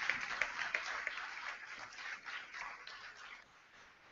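Audience applause, faint and thinning, fading away to nothing about three and a half seconds in.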